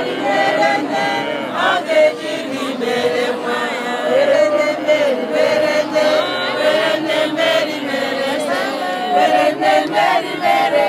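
A large crowd of worshippers singing a devotional song together, many voices in one continuous unbroken melody.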